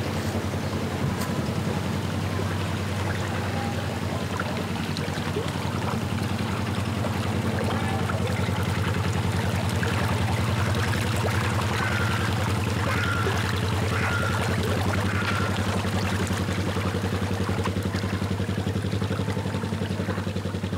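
The small diesel engine of a 24-foot narrowboat running steadily while the boat is under way, with water churning at the stern from the propeller.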